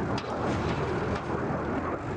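Steady, pitchless machine noise from demolition work on a cruise missile body.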